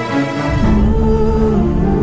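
Background music from a TV drama score, made of held notes; about half a second in, a deep sustained low drone comes in beneath them.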